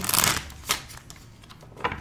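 A tarot deck shuffled by hand: a quick rush of cards flicking together at the start, then two short taps of the cards.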